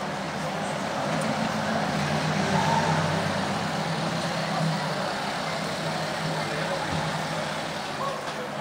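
Street traffic noise, with the engine of a nearby vehicle running and giving a steady low hum that swells a couple of seconds in.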